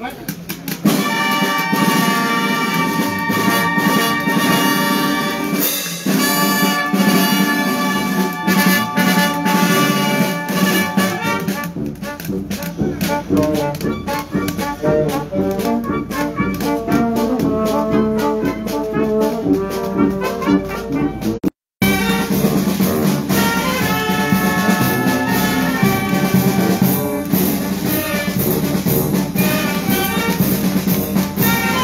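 Marching brass band with trumpets and sousaphones striking up a march about a second in: held chords at first, then quicker running passages. The sound cuts out for a split second about two-thirds of the way through.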